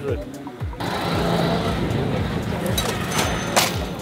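Background music with a steady beat, laid over outdoor ambience: a steady noisy hiss of open-air surroundings begins about a second in, with a couple of sharp clicks near the end.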